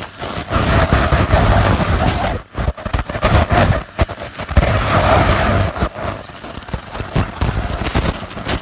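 Ultrasonic dental scaler working on a cat's teeth under its water spray: a thin, high-pitched whine that comes and goes over a steady hiss and low rumble, with a few brief pauses.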